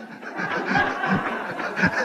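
A congregation laughing and chuckling: many overlapping voices starting about half a second in and carrying on.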